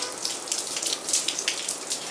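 Rain shower falling: a steady hiss of rain with a patter of individual drops.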